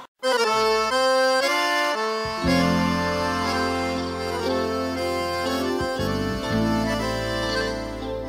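Accordion playing the melodic intro of a piseiro song, starting after a brief silent gap. Low bass notes join about two seconds in.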